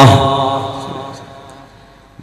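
The end of a man's long, held chanted note of religious recitation. Its echo fades away steadily over about two seconds.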